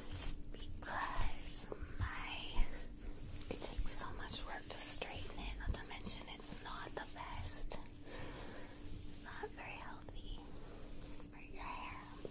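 Soft whispering by a woman while a hairbrush is drawn through long hair, with rustling and scattered clicks from the bristles and a couple of sharper knocks in the first few seconds. A faint steady hum lies underneath.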